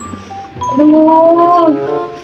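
A woman's long, drawn-out moan of pain, starting about half a second in and lasting about a second, rising slightly in pitch and then falling away.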